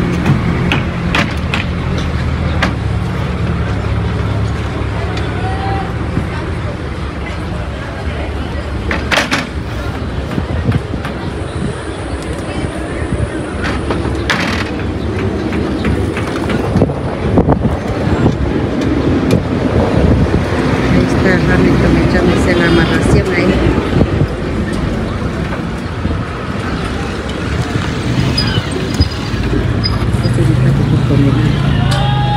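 A vehicle engine idling, with scattered knocks and clatter of wooden planks being stacked onto a car's roof rack.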